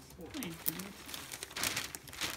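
Gift wrapping paper crinkling and rustling as it is handled, in crackly bursts that grow louder in the second half.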